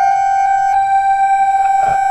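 Modified light-sensitive subwoofer instrument with Max/MSP autotuning sounding one steady held electronic note, rich in overtones. There is a brief soft noise near the end.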